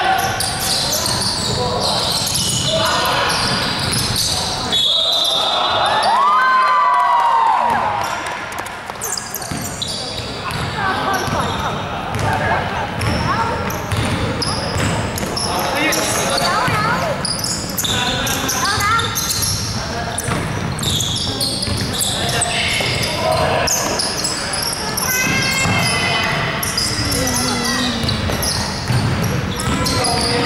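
Basketball game on a hardwood court in a large echoing sports hall: the ball bouncing, sneakers squeaking, and short high referee whistle blasts at the start and about five seconds in.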